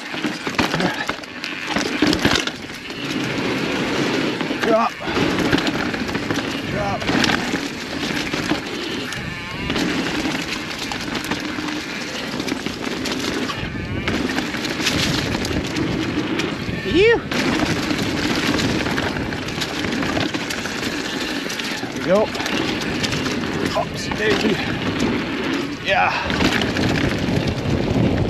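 Orbea Occam LT mountain bike ridden fast down a steep, rocky dirt trail: continuous tyre roar and rattling of the bike over rock and dirt, with wind buffeting the microphone. A few short squeaks cut through, and there is a louder jolt about seventeen seconds in.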